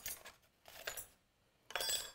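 Small pieces of steel scraper stock clinking and rattling against each other as a hand sorts through them in a wooden box: a few light clinks, then a busier cluster with a bright metallic ring near the end.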